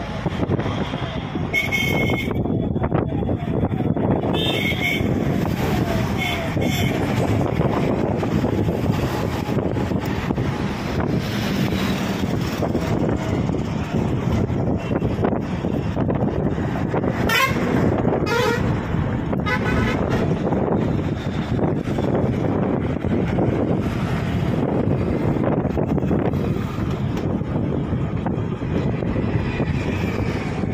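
Road traffic running steadily, with several short vehicle horn toots in the first few seconds and again about two thirds of the way through.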